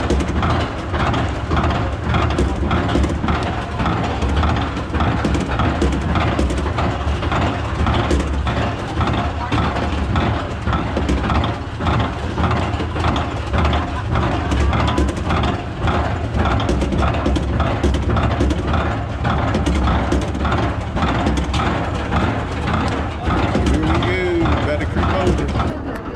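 Suspended roller coaster train (The Bat) climbing its chain lift hill slowly: a steady rhythmic clacking, about two a second, over a low mechanical rumble.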